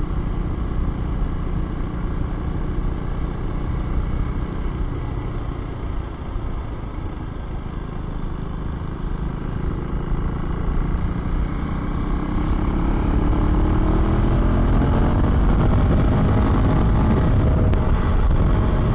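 2024 Husqvarna Svartpilen 401's 399 cc single-cylinder engine running steadily under wind rush on the microphone, then pulling harder in the second half, its pitch rising and getting louder as the bike accelerates.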